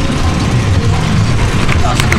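Roller coaster car running along its steel track: a steady low rumble of wheels and rushing air, with riders' voices rising near the end.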